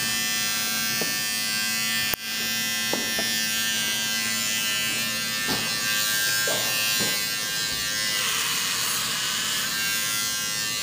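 Corded electric hair clippers running with a steady buzz while being used to shave the head, with a momentary break in the sound about two seconds in.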